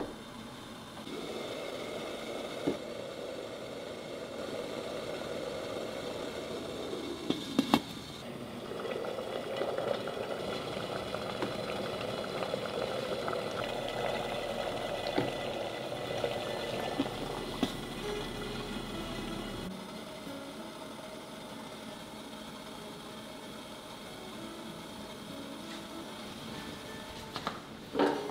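Water boiling in a stainless steel steamer pot over a gas burner, a steady bubbling hiss. There are a couple of sharp clicks about seven and a half seconds in. The boiling stops about twenty seconds in, leaving quiet room tone.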